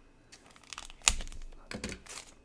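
Trading cards and a foil pack wrapper being handled: light crinkling, with a sharp click about a second in.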